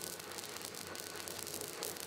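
Faint steady hiss with a fine rapid crackle, the sound of a Van de Graaff generator charged up and running.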